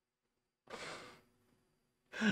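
One short breathy sigh, lasting about half a second and coming near the middle, in otherwise near silence.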